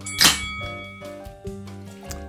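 A single bell ding that rings for about a second, marking the start of a countdown timer, over background music. It comes together with a short sharp burst from the aluminium cider can's pull-tab cracking open.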